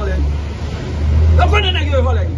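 A loud, steady low rumble that swells about a second in, with a man's voice starting over it shortly after.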